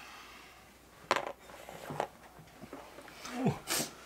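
A single sharp click about a second in, from a plastic game miniature being set down on the board, with a few fainter handling taps after it. Near the end come a short low vocal grunt and a brief breathy noise.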